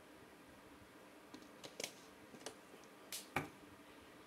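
Faint mouth sounds of someone eating and drinking: a handful of short, sharp clicks and smacks in the second half over quiet room tone.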